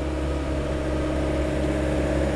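Mecalac 6MCR compact excavator's diesel engine and hydraulics running at a steady hum.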